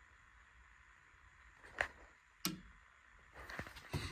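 Near silence, broken by two short sharp knocks a little over half a second apart in the middle, then faint rustling near the end.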